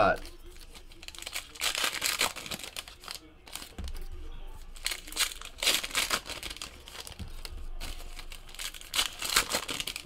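Trading card pack wrappers being torn open and crinkled by hand in repeated bursts, with cards being handled in between.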